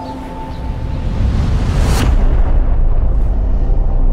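Film-trailer sound design: a low rumble swells, breaks into one sharp, deep boom about halfway through, and a heavy low rumble holds after it.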